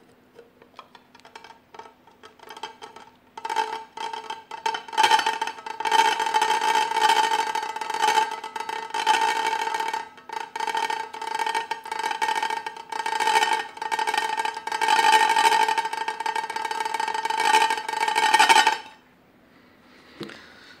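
Upturned ceramic plate being turned by hand on the plate beneath it, rim grating against rim with a steady ringing pitch. A few scattered clicks come first, then continuous grinding from about three and a half seconds in, which stops suddenly near the end.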